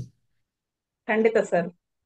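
Short burst of speech, well under a second long, about a second in, with dead silence on either side.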